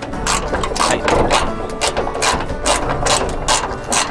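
Socket ratchet clicking in quick, even strokes, about three to four clicks a second, as it runs a freshly threaded hood-hinge bolt down toward snug.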